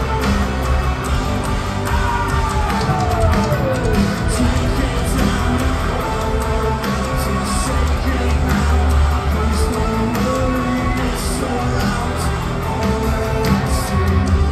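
A metalcore band playing live and loud: distorted electric guitars, keyboards, drums and a heavy low end, heard from within the crowd. A falling glide in pitch sweeps down about two seconds in.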